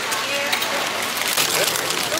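Steady rain falling on an umbrella held overhead and on the street around it, with faint voices mixed in.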